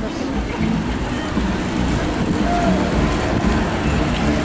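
Wind buffeting the microphone as the bicycle rides along, a steady rumbling noise, with faint voices of other riders in the group.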